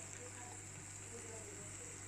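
Egg and shallots frying gently in oil in a pan over low heat: a faint, steady sizzle over a constant low hum.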